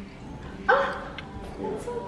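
A dog barks once, a single short, sharp bark a little under a second in, over faint background voices.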